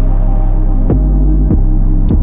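Trap type-beat instrumental in a stretch without hi-hats: a loud sustained 808 bass, with two kick hits that drop sharply in pitch, about a second in and again half a second later.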